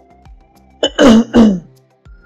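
A person clears their throat: two loud, rough rasps in quick succession about a second in, over quiet background music.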